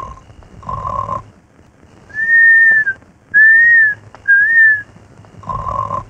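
Comic cartoon-style snoring from a sleeping man: a rasping snore, then three high whistled breaths about half a second each, then another rasping snore near the end.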